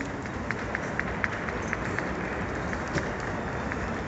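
Stadium crowd applauding, a steady wash of distant clapping, with one pair of hands clapping close by about four times a second.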